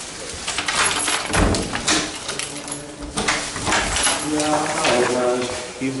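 A few sharp clicks and knocks, then a man's voice singing or humming held notes in the second half.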